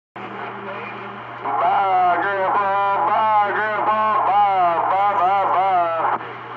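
CB radio receiving on channel 28 (27.285 MHz): static with a steady hum, then about one and a half seconds in a voice comes in over the air, louder than the static and thin-sounding.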